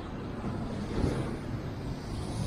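Wind rumbling on the microphone, with a steady wash of surf behind it.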